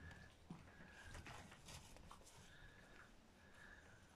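Faint crunching and smacking of a black bear chewing small bites of an apple held in its paws, as soft scattered clicks in near silence.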